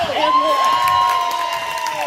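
Several spectators shouting together in one long, high-pitched held cry, their voices overlapping at slightly different pitches and sagging at the end.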